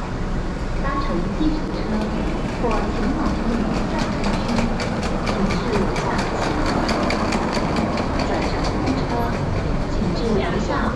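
A train running past with a steady low rumble and a regular clicking, about three clicks a second, through the middle of the stretch. People's voices can be heard in the background.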